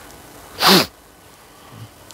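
A single short burst of breath and voice from a person, sneeze-like, about half a second in: a sharp hiss with a falling pitch.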